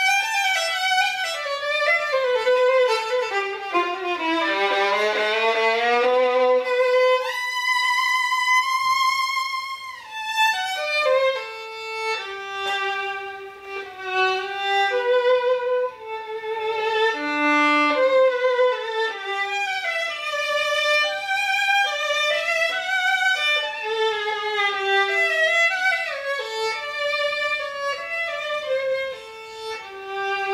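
Solo bowed violin, an old German Stainer-model instrument, playing a slow melody with vibrato on its held notes. It dips to low notes about five seconds in, then climbs to a long held high note.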